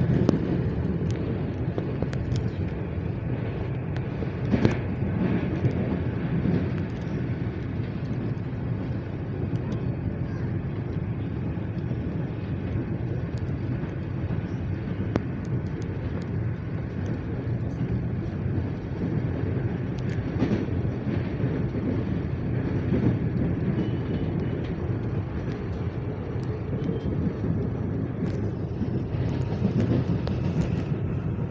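Steady running noise heard from inside an electric commuter train moving at speed: a constant low rumble of wheels on rail. A few short sharp clicks stand out, about four seconds in and again near twenty seconds.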